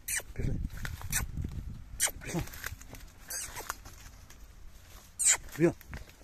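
A man's voice calling short words to urge a horse and foal to move on, with several sharp clicks between the calls.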